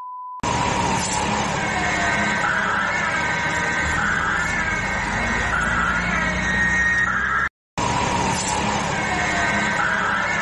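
A short steady test-tone beep at the very start, then the Ecto-1's siren wailing up and down over a car engine. About seven and a half seconds in it cuts off for a moment, then the wail starts again.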